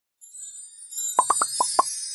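Cartoon editing sound effect: a high, glittering twinkle comes in, and about a second in five quick bubble-like pops follow one another, each a short rising blip.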